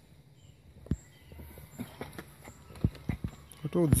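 Footsteps going down stone steps strewn with dry leaves: a string of short, irregular knocks, several a second.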